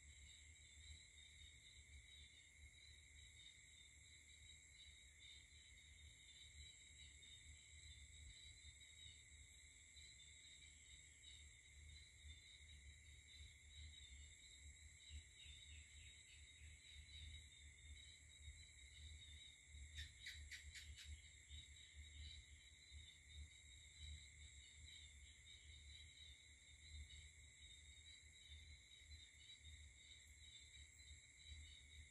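Near silence with a faint, steady chorus of night insects such as crickets. About two-thirds of the way through comes a quick run of clicks lasting about a second.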